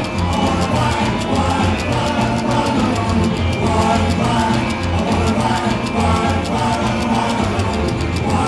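Rockabilly band playing live: upright double bass, electric guitars and drums keeping a steady beat, with a male lead vocal sung over them.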